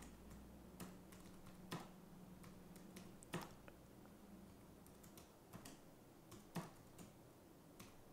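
Faint, scattered clicks of typing on a computer keyboard, about a dozen keystrokes at uneven intervals.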